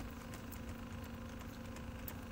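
Faint, steady mechanical hum with a low, even tone.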